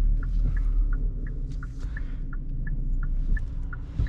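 Hyundai i30's turn-signal indicator ticking in the cabin, about three short clicks a second alternating between two pitches, over the steady low rumble of the car on the road.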